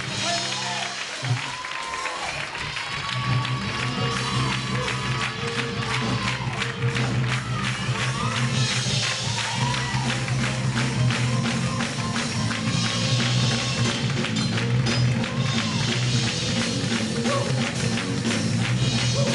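Live church band striking up an up-tempo praise-break groove about a second in, with a steady bass line, a fast even drum and tambourine rhythm, and the congregation clapping and calling out over it.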